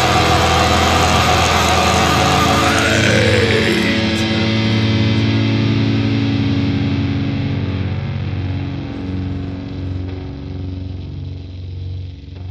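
Closing bars of a heavy metal song: the drums have stopped and a sustained guitar chord rings on, with one note gliding up in pitch and another gliding down about three seconds in, then the sound slowly fades.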